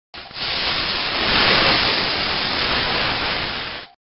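A loud, steady hiss that starts abruptly, swells in the middle and cuts off about four seconds later.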